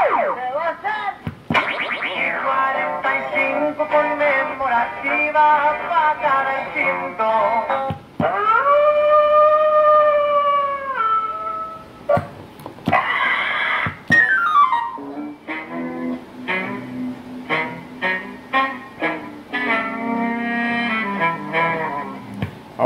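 Incoming-call sound effects from the add-on sound box of a Galaxy DX98VHP CB radio, in roulette mode, so each key of the microphone plays a different one. They come as a string of short electronic melodies and whistle-like pitch sweeps with brief breaks between them, and one long held tone about eight to eleven seconds in.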